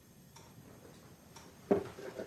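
A few faint, short ticks, with one louder knock about three quarters of the way through.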